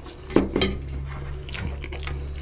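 Fingers scraping and mixing curry on a stainless steel plate, with one sharp clink against the metal about half a second in and a few lighter ticks after it.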